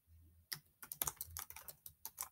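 Faint, quick, irregular computer keyboard keystrokes, starting about half a second in.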